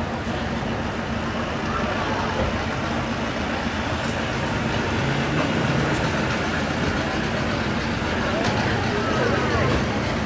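A vehicle engine running steadily with a low hum, with people chatting over it.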